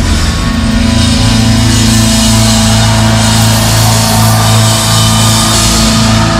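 A live rock band playing loudly: a held, sustained chord over drums and cymbals.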